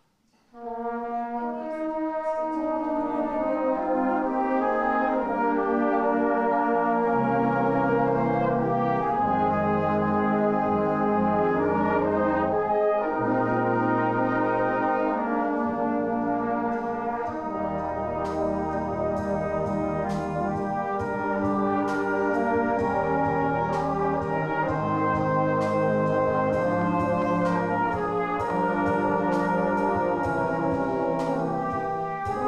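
Salvation Army brass band, with trombones and tubas, playing a piece that starts about half a second in with full held chords over a moving bass line. Light, regular percussion strokes join about eighteen seconds in.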